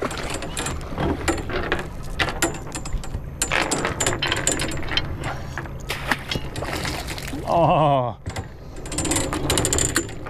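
Anchor chain being hauled up by hand over the bow and piled onto a fibreglass deck, its links clanking and rattling continuously. About seven and a half seconds in, a short vocal sound falls in pitch.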